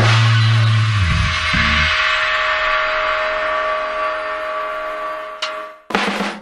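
A rock band's final chord ringing out on electric guitars, bass and cymbals: the bass note stops about two seconds in, and the guitar chord and cymbal wash fade slowly, ending with a click and a sudden cut near the end.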